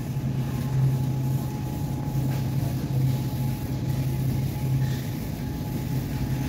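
Steady low hum of refrigerated meat display cases, with a faint higher tone above it.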